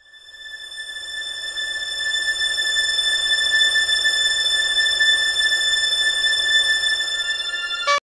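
A steady, high-pitched whine with a hiss under it, swelling up over the first two seconds, held at one pitch, then cut off suddenly at the end.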